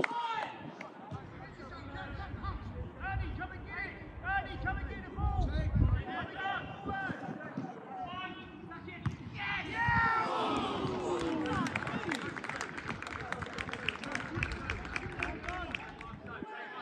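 Football players and spectators shouting on the pitch: several voices calling out at a distance, loudest about ten seconds in.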